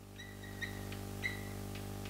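Chalk writing on a blackboard: a few faint, short scratchy strokes over a steady low electrical hum.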